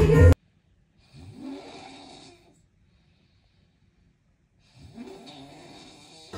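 A man snoring: two long snores about three and a half seconds apart, the first about a second in and the second near the end. Loud dance music cuts off abruptly just at the start.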